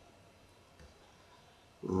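Near silence: room tone, with a man's voice starting again near the end.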